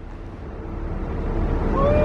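Jet airliner flying overhead: a low rumble that grows steadily louder.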